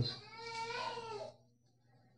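A faint animal call in the background, about a second long and wavering in pitch, much quieter than the preacher's voice.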